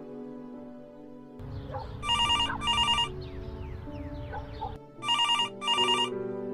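Telephone bell ringing in double rings, one pair about two seconds in and another about three seconds later, over soft background music. Between the rings there is a stretch of low street-like noise with short chirps.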